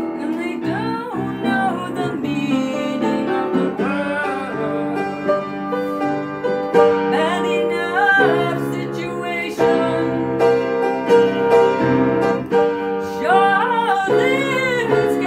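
A woman singing with her own upright piano accompaniment: held piano chords under sung phrases with a wavering vibrato on the long notes. Picked up by a tablet's built-in microphone.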